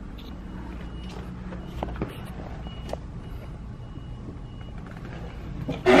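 Low steady background rumble with a faint high-pitched beep repeating at even intervals, and a few light clicks about two and three seconds in. A loud voice cuts in at the very end.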